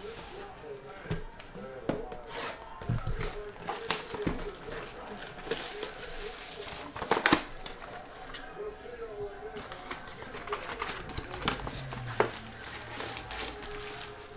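Hands opening a cardboard card box and handling its foil-wrapped trading-card packs: irregular crinkling, rustling and light taps, with a loud crackle about seven seconds in.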